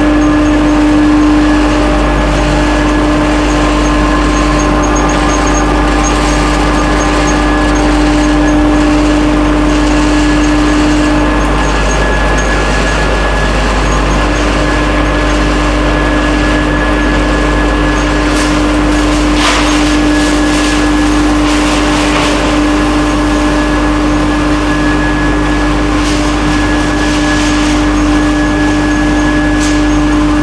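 A 132 kW vertical wood pellet mill running under load, pressing pellets, together with the vibrating pellet screen it discharges onto. The sound is a loud, steady machine drone with a strong, even hum, and brief rattling bursts about two-thirds of the way through.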